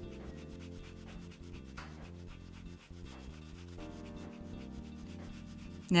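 Brush bristles rubbing across card in repeated feathering strokes, dragging colour out along the lines of a drawing. Soft background music sits underneath.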